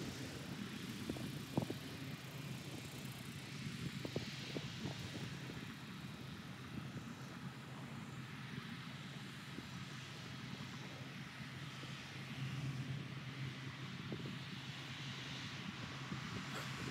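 Distant tractor engine running steadily as it drives a fertilizer broadcaster across the field, heard faintly as a low hum over open-air noise, with a few faint knocks.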